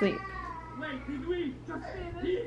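A one-year-old crying in the background, a string of short wavering cries: he is tired and fighting his nap.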